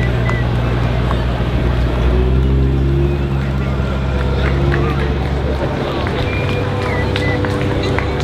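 A vehicle engine running low and steady as parade cars roll slowly past, its pitch shifting about two seconds in and again near six seconds. Crowd chatter runs over it.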